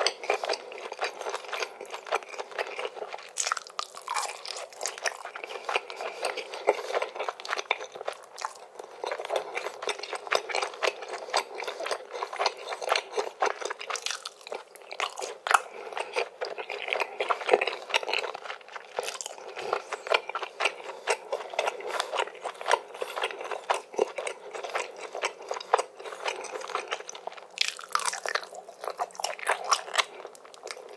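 Close-miked chewing of a mouthful of grilled chicken in sauce: a continuous run of small wet clicks, smacks and light crunches from the mouth.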